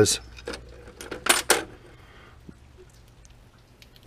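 Steel drill bits clinking against each other and the metal tool chest drawer as a hand picks through them: a few light metallic clicks, the loudest two close together about a second and a half in.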